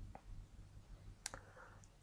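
Quiet room hum broken by two faint computer-mouse clicks: a soft one near the start and a sharper one a little past halfway.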